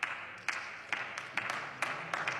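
Scattered clapping from a few people, uneven, about two to four claps a second.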